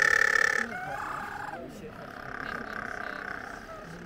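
Little penguins calling: a loud drawn-out call that stops about half a second in, then quieter, shorter calls and a faint long call in the second half.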